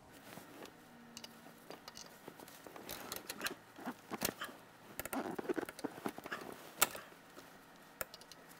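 Light scattered clicks and rubbing of a hose wrench and rubber fuel injector hoses as the hoses are worked off the diesel injectors, with a sharper click about seven seconds in.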